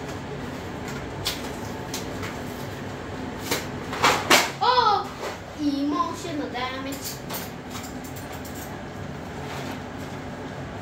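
A cardboard macaroni-and-cheese box being torn open and handled by hand: a few sharp rips and clicks, the loudest about four seconds in. Short wordless vocal sounds from a child follow.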